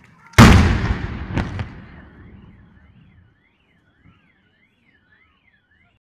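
A firework shell bursting loudly with a long rumbling echo, followed about a second later by two sharper cracks. As the rumble dies away, a car alarm starts wailing, its tone rising and falling about twice a second.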